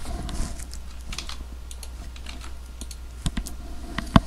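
Typing on a computer keyboard: a quick, uneven run of key clicks as a login password is entered, with two sharper clicks a little after three seconds in, over a low steady hum.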